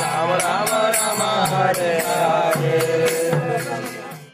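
Devotional group chanting of a mantra (kirtan), voices singing a melodic line over the steady clash of hand cymbals and the low beats of a drum.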